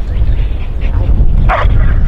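A dog barks once, short and sharp, about one and a half seconds in, over a loud steady low rumble.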